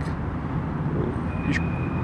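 Steady low outdoor background rumble of distant city traffic. About one and a half seconds in there is a faint click and a short thin high tone.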